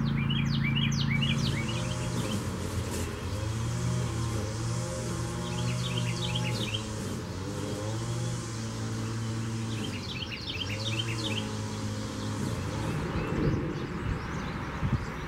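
Small songbirds chirping in three quick bursts of short, high twittering notes: near the start, about six seconds in, and around ten seconds in. A steady low drone runs underneath throughout.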